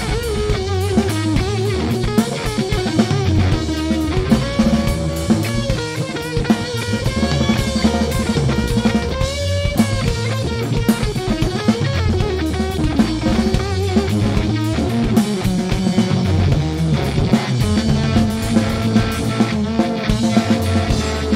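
Live rock band playing: an electric guitar plays a lead line with bent, wavering notes over a steady drum kit beat.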